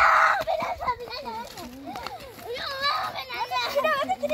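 Children's voices shouting and calling out as they play, with the loudest cry right at the start.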